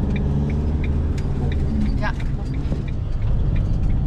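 Camper van engine and road noise heard inside the cab while driving, a steady low rumble.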